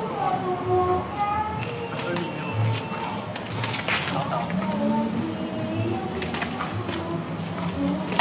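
Simulated sparring swords clacking together several times as two fighters exchange blows, the loudest strike about four seconds in, over background voices.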